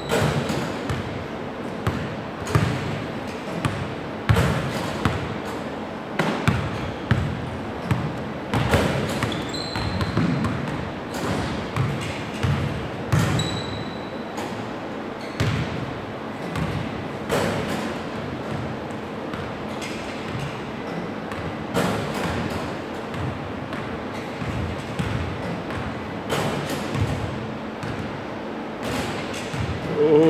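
Basketballs bouncing on a hardwood gym floor during a shooting drill, a sharp thud every second or two at an uneven pace.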